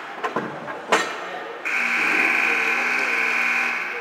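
Hockey sticks and puck clacking on the ice, the loudest a sharp crack just before a second in; then, about a second and a half in, an arena buzzer sounds steadily for about two seconds.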